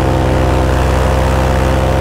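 Paramotor engine and propeller running at a steady, constant throttle in flight, a loud even drone that holds one pitch.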